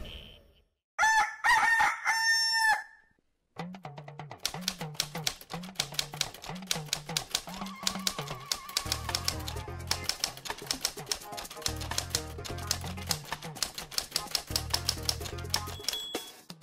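A rooster crows once about a second in. From about three and a half seconds on, a music bed with a pulsing bass line runs under rapid typewriter-like clicks.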